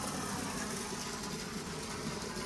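A steady, unbroken engine-like hum.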